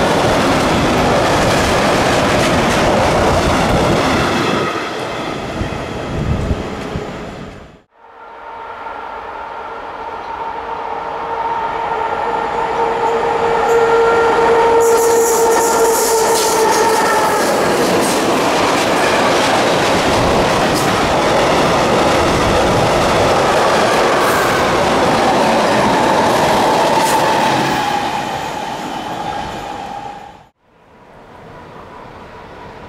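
A freight train of covered hopper wagons rattling past at speed, which cuts off sharply about eight seconds in. Then an electric freight locomotive approaches with a steady whine that grows louder, passes, and its train rumbles and clatters by, fading near the end.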